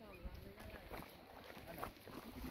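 Faint low wind rumble on the microphone, with soft scattered rustles and ticks in dry scrub.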